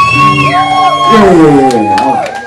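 A man's voice through a microphone and PA, holding one long note for about a second and then sliding down in pitch, over live band music.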